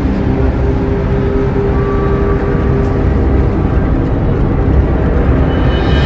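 Background music of long, held low notes, with a higher set of notes coming in near the end.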